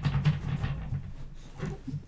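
A deck of tarot cards being shuffled by hand: a rapid run of soft card clicks and flicks that thins out toward the end, over a steady low hum.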